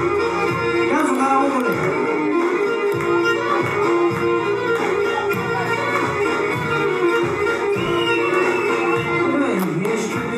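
Live Pontic Greek dance music, a tik: a bowed, fiddle-like Pontic lyra plays the melody over a steady rhythmic accompaniment, with no singing.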